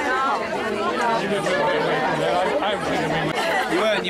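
Several people talking at once: overlapping, indistinct conversation from a group of guests.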